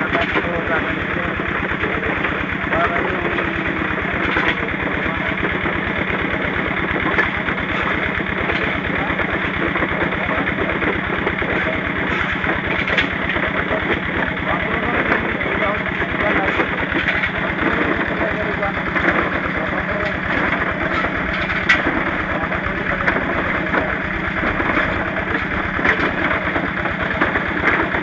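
Small stationary engine running steadily at constant speed with a fast, even beat. It is the engine driving the ore-grinding ball mill drum.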